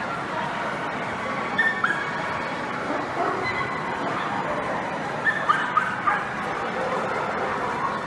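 A dog gives short, high yips in two clusters, about a second and a half in and again around five to six seconds, over the steady murmur of a crowded hall.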